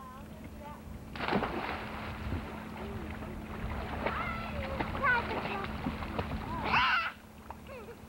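A child jumping off a diving board into a swimming pool: a splash about a second in, then water sloshing as swimmers move, with children's voices and a short loud call near the end.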